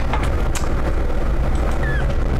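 Steady low background hum, with a single sharp click about half a second in.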